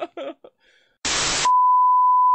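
A brief burst of TV static, about a second in, cuts straight into a loud, steady single-pitched test-tone beep: the colour-bars 'please stand by' signal.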